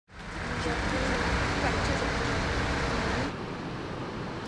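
Outdoor background of steady traffic-like noise and rumble with indistinct voices. It drops suddenly to a quieter background a little past three seconds in.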